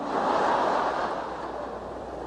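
A large audience laughing together after a joke, a swell of laughter that dies away over the two seconds.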